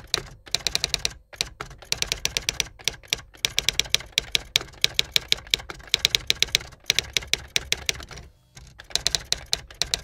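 Typewriter keys striking in quick runs of about eight strokes a second, broken by short pauses, with a longer pause near the end, as a line of text is typed out.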